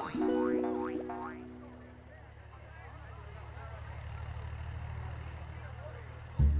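Cartoon tractor engine sound effect: a low, fast-pulsing chug that grows slowly louder. In the first two seconds a held musical chord with a few rising glides fades out over it.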